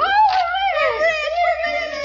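A high-pitched voice letting out one long, wavering whoop of joy.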